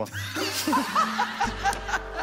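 Short bursts of laughter and chuckling, then a background music bed with a steady low note coming in about three quarters of the way through.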